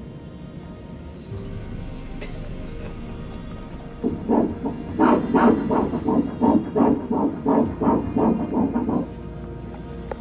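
Fetal heartbeat played through an ultrasound machine's Doppler speaker: after a steady hum, a rapid run of rhythmic whooshing pulses starts about four seconds in and stops about a second before the end. The rate is read as 171 beats per minute.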